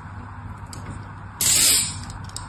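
Hands picking up a bar of soap, heard as a short, loud scuffing hiss lasting about half a second, about one and a half seconds in.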